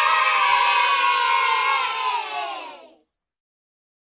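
A crowd cheering and shouting. It cuts in suddenly and fades away about three seconds in.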